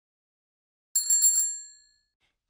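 A bright bell sound effect, rung in a few quick strikes about a second in and then ringing out and fading away.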